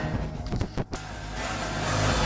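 A Nissan 3.5-litre V6 idling steadily, with a few sharp clicks just under a second in. Car stereo sound swells back in near the end as the volume knob is turned up.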